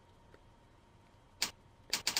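Near-silent room tone with a faint steady hum, broken by two short sharp noises about a second and a half and two seconds in, just before a voice starts.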